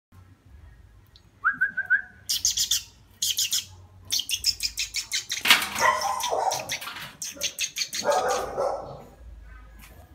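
An owl calling: a short, slightly rising note repeated a few times, then bursts of rapid clicking chatter, broken by two harsher, lower squawks about halfway through and near the end.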